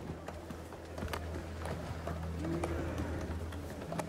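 Background score: a low sustained drone that comes in about half a second in, with a short low note that swells up and falls away, under scattered small knocks and clicks of ambience.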